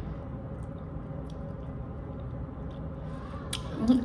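A person chewing a mouthful of soft overnight oats, with faint wet mouth clicks over a steady room hum; a sharp lip smack comes near the end.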